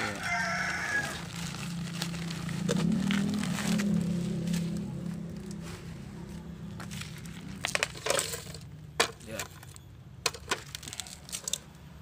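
A rooster crowing at the start, followed by a low hum that swells and fades over the next few seconds. Later come scattered sharp clicks and rustles as soil and a plastic sheet are handled.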